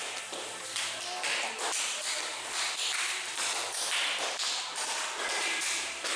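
Hands slapping in a run of high-fives between training partners, some in hand wraps, giving irregular sharp slaps a couple of times a second over faint voices in a large hall.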